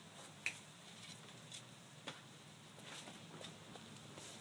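Near quiet, with a few faint, sharp clicks and taps, the clearest about half a second in.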